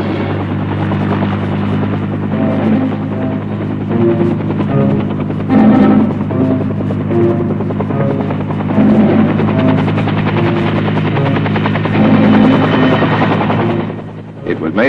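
UH-1 Huey helicopters running, with a steady rotor chop over a low engine drone. A music score plays over them in short, repeating melodic notes.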